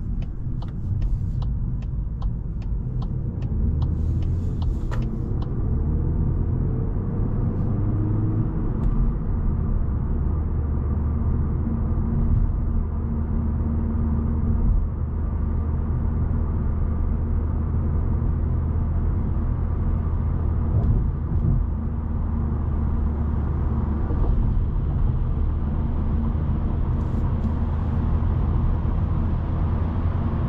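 Interior sound of a Volkswagen Golf 8's 1.5 TSI four-cylinder petrol engine and tyres while driving: a steady low hum and road rumble. The engine note rises and then steps down about nine seconds in, as the automatic gearbox shifts up. A run of light clicks sounds in the first few seconds.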